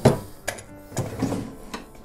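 Wooden desk drawers being handled: a sharp knock as one drawer is pushed shut, then softer knocks and wood sliding on wood as another drawer is pulled open.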